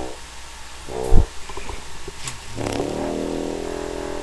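Single F French horn (1921 Conn) playing: two short notes, a sharp low thump just after a second in, then a long, low held note from under three seconds in.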